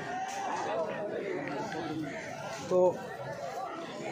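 Background chatter of many people talking at once, with no single voice standing out. A man says one short word about three seconds in.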